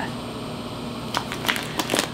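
Vacuum-sealed plastic bag of pork chops crinkling as it is lifted, a few sharp crackles in the second half.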